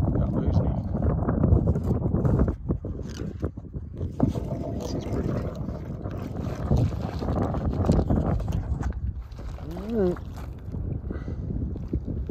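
Wind buffeting the microphone, heaviest for the first two seconds or so, over water lapping on a stony lakeshore, with scattered small knocks. A short hummed voice sound about ten seconds in.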